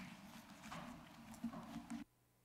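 Faint room sound through an open meeting-room microphone: a few light knocks and shuffles, the kind made by handling papers or moving about. Right at the end the feed cuts suddenly to dead silence, as when the microphone is switched off.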